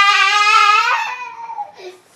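A young boy crying: one long, high wail that weakens about a second in and fades out near the end.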